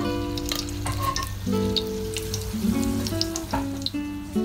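Spring rolls frying in hot oil, sizzling with scattered small crackles, under background acoustic guitar music.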